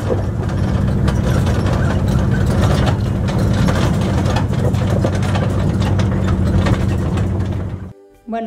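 Tour truck climbing a rough, rocky off-road track: the engine runs steadily under load while the vehicle body rattles and knocks as it jolts over stones.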